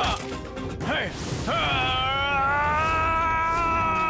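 Cartoon fight-scene soundtrack: short shouts and hit effects in the first second and a half, then a long held note of the background music.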